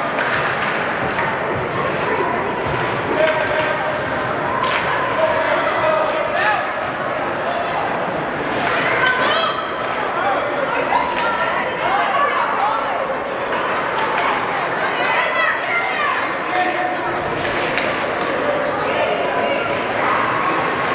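Ice rink ambience during a youth hockey game: many overlapping spectator voices and shouts in a large echoing hall, with scattered sharp knocks of sticks and puck on the ice and boards.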